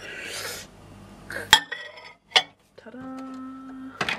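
A ceramic plate scraped into a ZIP microwave oven, then two sharp clicks as the door is shut and the dial is set. About three seconds in, the microwave starts its steady electric hum.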